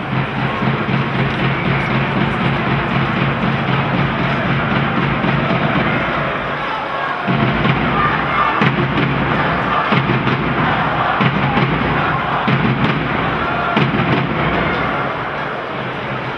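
Music playing over the steady noise of an arena crowd.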